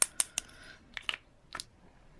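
Light, sharp plastic taps of a glitter scoop knocking against a plastic tub as glitter is tapped in: three quick taps at the start, then a few scattered ones about a second in.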